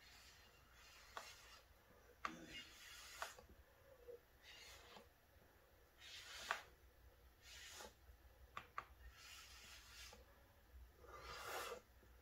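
Faint, short puffs of air from a squeezed turkey baster blown across wet acrylic pouring paint, about ten soft hisses at irregular intervals of roughly a second, with a longer one near the end. The air is catching the edges of the paint to push it outward.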